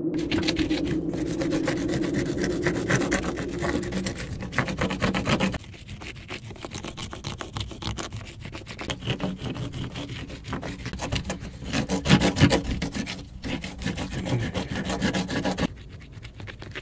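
Dense, rapid scraping and rubbing as an adobe brick wall is dug through by hand from inside, loudest in the first few seconds and again briefly about twelve seconds in.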